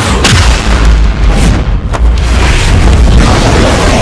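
Animated-fight sound effects: a heavy booming blast with a long deep rumble over a dramatic music score, with a sharp hit just after the start and another near two seconds in.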